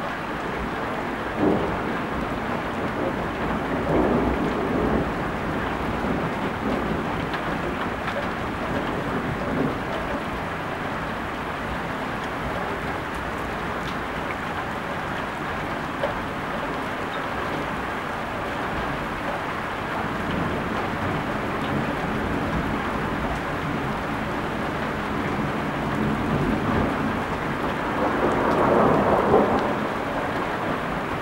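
Heavy rain falling steadily during a thunderstorm, with thunder rumbling: rolls a few seconds in, and a louder, longer roll building near the end.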